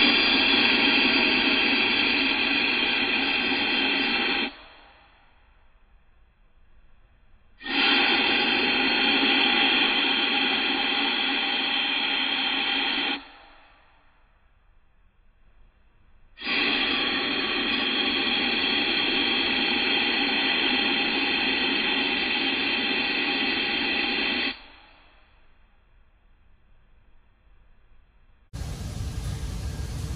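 Compressed air blowing into the intake of a 1956 Ford 600 tractor's updraft carburetor in three long blasts with pauses between, played back slowed down so the hiss sounds low and dull. The air stands in for the running engine and draws cleaner out of the float bowl as a spray, the sign that the cleaned carburetor will pull fuel.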